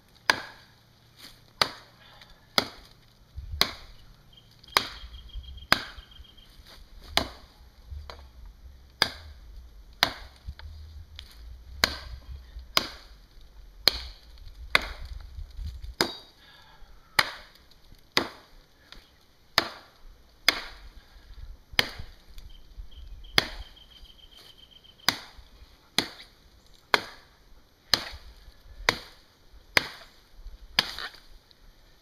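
Cold Steel Jungle Machete, a thick, head-heavy carbon-steel blade, chopping a four-to-five-inch fallen tree branch: a steady run of sharp blows biting into the wood, roughly one or two a second.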